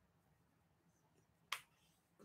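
Near silence with faint room tone, then a single short sharp click about one and a half seconds in.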